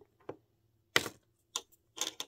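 A few small sharp clicks and taps of plastic toy pieces being handled and set down on a tabletop. The loudest comes about a second in.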